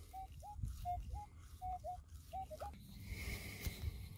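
Minelab Equinox metal detector giving its target tone as the coil is swept back and forth over a buried target: about five short, faint beeps in the first three seconds, each a steady tone that jumps up in pitch at its end. Faint low rustling follows.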